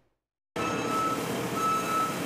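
Backup alarm of a Case wheel loader beeping over its running engine: long, even beeps about once a second, starting half a second in.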